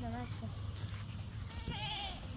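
A goat bleating twice in a quavering voice, once at the start and once, higher-pitched, near the end.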